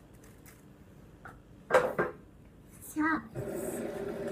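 A toddler's two short, loud shouts in quick succession about halfway through, then a held, open-mouthed voice near the end.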